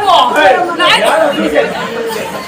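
Speech only: performers talking, amplified through a hand-held stage microphone.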